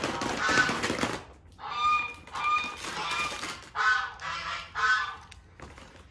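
A second of rustling as the feed bag is handled, then farm fowl honking: about five short calls a little under a second apart.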